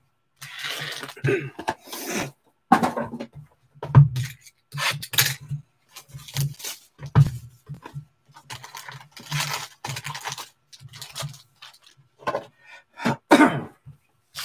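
Hands handling cardboard trading-card boxes and foil packs: irregular rustling, scraping and light knocks, with a throat clear about two seconds in.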